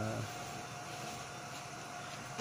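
A steady hum with one constant mid-pitched whine from the 3D-printed faceting machine.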